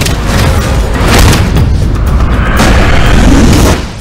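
Loud, dense trailer music with deep booming hits, cutting off abruptly near the end.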